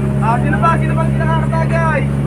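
Steady drone of an outrigger boat's engine while under way, with people's voices talking over it.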